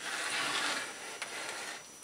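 Wooden handle being slid and shifted by hand on a drill press table: a scraping rub for about a second, a small knock, then quieter handling.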